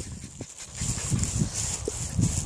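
Dogs moving and sniffing about close to the microphone, making irregular soft low bursts and a few short knocks, with no barking.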